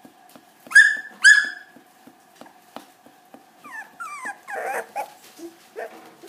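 Miniature schnauzer puppy giving two short, high-pitched yelps about a second in, then softer, wavering whimpering cries around four seconds in.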